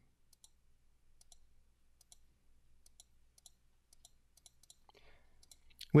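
Faint, irregular computer mouse clicks, some in quick pairs, from buttons being clicked on an on-screen calculator keypad.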